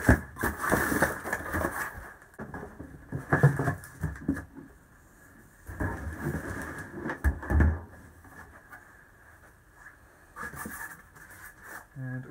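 Handling noise from unpacking: cardboard and plastic packaging rustling and knocking in irregular bursts, with a heavier low thump about seven and a half seconds in as the welder is set down on the wooden bench.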